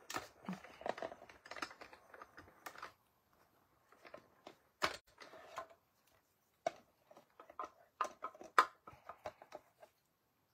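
A small hand-cranked die-cutting machine running a die and cardstock through between plastic cutting plates, then the clear plates being lifted apart: scattered light clicks and clacks of plastic, with short pauses between them.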